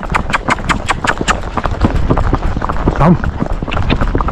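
A young horse's hooves striking asphalt at a quick, even gait while it is ridden, several hoof beats a second in a steady rhythm.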